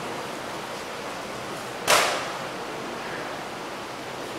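Steady hiss of room noise in a large church, with a single sharp knock about two seconds in.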